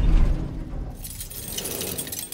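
The rumble of a car crash dies away, then broken glass and loose debris jingle and tinkle as the wreck settles.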